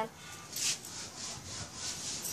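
Irregular rustling and rubbing on the handheld phone's microphone as it is moved, with a louder brush a little after half a second in.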